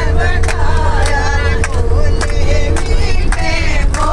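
A group of women singing together in unison with rhythmic hand clapping, about two to three claps a second, over the steady low rumble of the moving bus.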